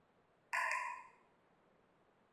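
A single short bird call about half a second in, lasting about half a second, against faint room tone.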